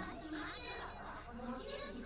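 Anime dialogue in Japanese: a character speaking in a high, whining voice.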